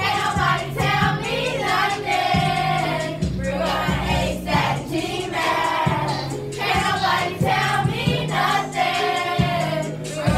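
Children's voices singing a song together over a backing track, with a steady bass line and beat underneath.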